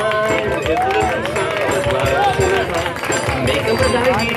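Live forró trio of accordion (sanfona), zabumba drum and triangle playing a xote. A melodic line runs over a steady percussive beat.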